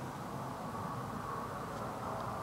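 Steady low background noise with no distinct sounds: room tone.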